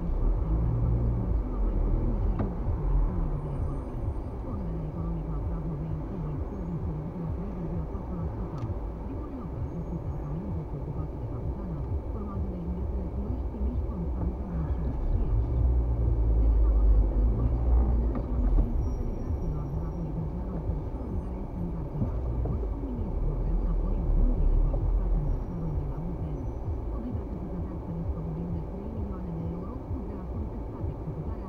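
Low rumble of a car's engine and tyres heard from inside the cabin while driving slowly in stop-and-go traffic, swelling a little about halfway through. A muffled voice can be heard underneath.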